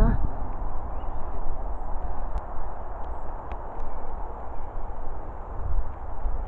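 Steady rustling noise with a deep rumble underneath: handling and movement noise on a handheld camera microphone as it is swept around.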